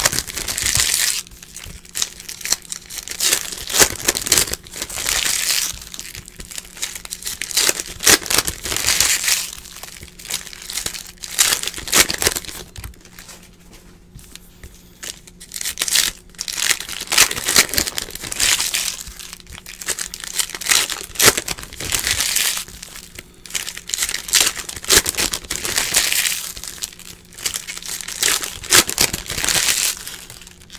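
Foil trading-card pack wrappers crinkling and tearing as packs of 2018 Optic baseball cards are opened by hand, mixed with cards rustling and sliding as they are sorted. The crinkling comes in bursts every few seconds and eases off for a couple of seconds before the middle, over a faint steady low hum.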